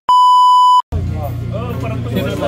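Television colour-bars test-tone beep used as an editing transition: a single loud, steady, high-pitched beep lasting under a second that cuts off abruptly. Music with voices follows just after it.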